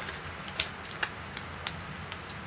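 A few sharp, light clicks and taps, about half a second apart, as a roll of clear tape and paper craft pieces are handled on a table.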